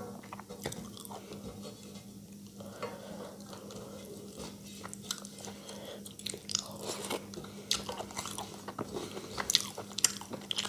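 Close-miked eating by hand: wet chewing and mouth smacks, with fingers gathering rice on a metal plate. Many short clicks come throughout, busier and louder in the second half, with the loudest ones near the end.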